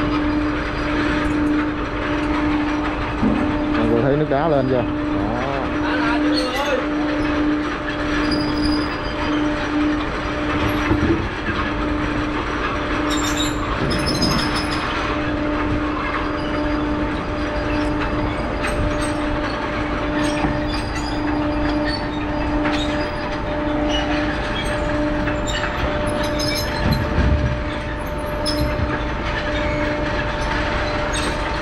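Ice conveyor running, its electric drive motor giving a steady hum while the chain and rollers rattle and clatter with blocks of ice riding along, with scattered knocks as blocks bump on the track.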